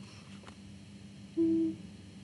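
A single short hummed 'mm' on one steady pitch, about a third of a second long, over a faint steady room hum.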